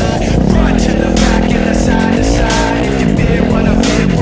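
Dirt bike engine revving up and down as it rides along a trail, heard alongside background music.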